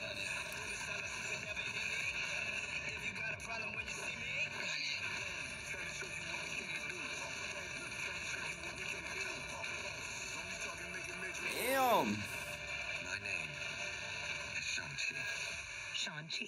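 Movie trailer soundtrack: a sustained, droning music bed with effects under it, and a short loud pitched sweep that rises and falls about twelve seconds in.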